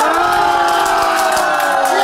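A small group of people cheering, their voices joined in one long, sustained yell.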